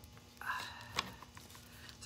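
Faint handling sounds of crafting materials, a short rustle followed by a single sharp click about a second in.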